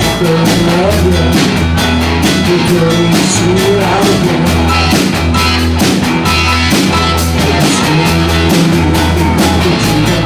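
Live rock band playing loud and steady: electric guitars, electric bass and drum kit, with keyboards in the band, over a regular drum beat.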